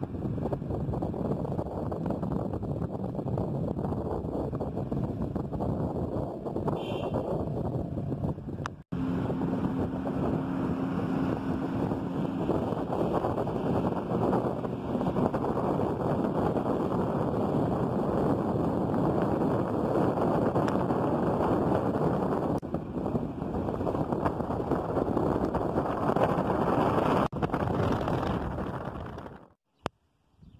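Steady rush of wind and road noise in a moving car, with a brief break about nine seconds in and a faint low steady hum for a few seconds after it.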